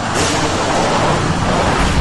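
Off-road dirt bike engine running hard, under a loud, even rushing noise that eases off near the end.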